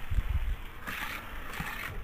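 Die-cast Hot Wheels car rolling along orange plastic track, with low thumps near the start from the camera being carried beside it and a hissing rush from about a second in.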